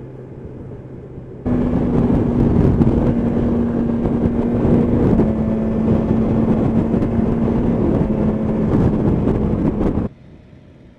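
Motorcycle riding at motorway speed: a steady engine drone under loud wind and road rush, with the engine note shifting slightly about halfway through. It comes in abruptly about one and a half seconds in, after a quieter stretch of engine hum.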